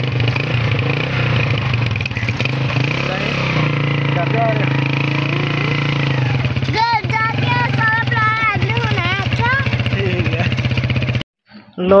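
Motorcycle engine running steadily under way, heard from on the bike, its note stepping up slightly about three and a half seconds in. Voices sound over it in the second half, and it cuts off abruptly near the end.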